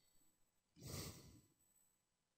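Near silence, broken once about a second in by a short breath into the microphone.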